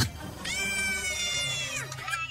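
One long high-pitched cry, held for about a second and a half and dipping in pitch as it cuts off, over background film music.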